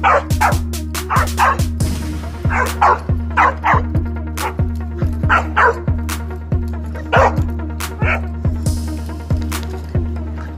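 A dog barks and yips in about a dozen short bursts, the last a little after eight seconds in. Under it runs a music track with a heavy, steady bass beat.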